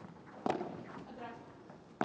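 A padel ball struck by a racket during a rally: one sharp pop about half a second in, with faint court sound after it.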